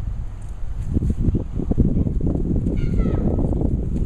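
Hands crumbling and sifting loose soil from a dug plug, then a hand digger working into the dirt: irregular crackling and rustling close to the microphone. A short, falling high-pitched call sounds once, about three seconds in.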